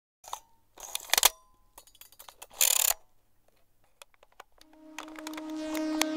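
Intro sound effects: scattered clicks and two short noisy bursts, some ending in a brief metallic ring. Past the middle a held low tone fades in and grows, the start of ambient background music.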